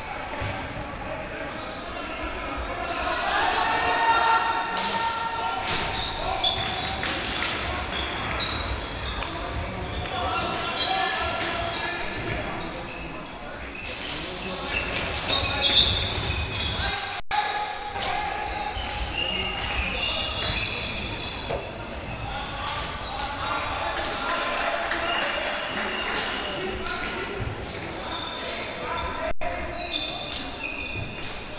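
Indoor hockey game sounds echoing in a large sports hall: sharp clacks of sticks striking the ball and the ball hitting the side boards, players' shoes squeaking on the hall floor, and players calling out.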